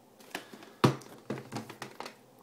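Plastic VHS clamshell case being handled and turned over in the hand: a string of light clicks and taps, the sharpest a little before a second in.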